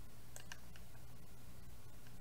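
Two light computer mouse clicks close together about half a second in, over a steady low electrical hum.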